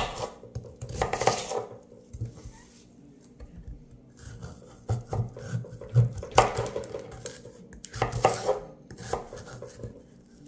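Chef's knife cutting through firm peeled jicama on a wooden cutting board: a handful of irregular knocks of the blade hitting the board. The strokes shake the table and rattle a pitcher standing on it.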